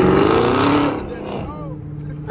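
Car engine accelerating hard, its exhaust note rising and loud for about the first second, then fading away.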